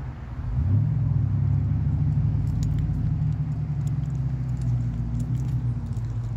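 Low, steady engine rumble of a motor vehicle running close by, growing louder about half a second in and then holding, with faint light clicks over it.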